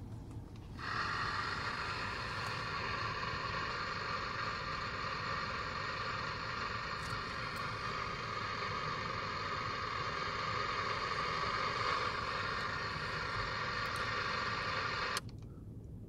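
Receiver static from a Cobra CB radio tuned to channel 19: a steady hiss with faint fixed tones and no voice coming through, an unanswered call. It comes on about a second in, when the mic is released, and cuts off suddenly near the end, when the mic is keyed again.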